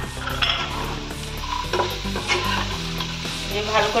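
Diced vegetables and nuts frying in a nonstick kadai, sizzling steadily, while a steel spatula stirs them and scrapes and clicks against the pan.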